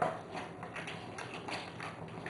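A lemon half pressed and twisted by hand on a glass citrus juicer: faint, irregular small ticks and taps of fruit against the glass reamer.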